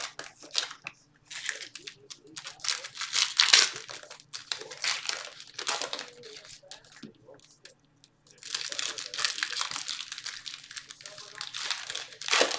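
Foil wrappers of Topps baseball card packs crinkling and tearing as packs are opened and handled, in irregular bursts with a short pause about two-thirds of the way through.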